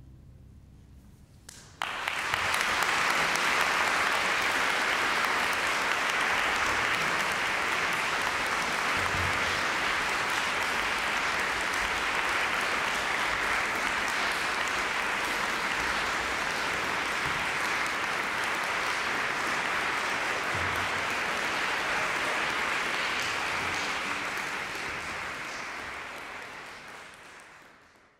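Audience applause breaking out suddenly about two seconds in, holding steady, then fading out near the end.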